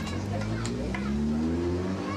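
Café background ambience: indistinct chatter of several voices with a light clink of crockery, over a low hum that rises in pitch through the second half.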